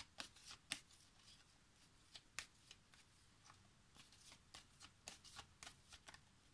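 Faint, irregular clicks and snaps of a deck of cards being shuffled by hand.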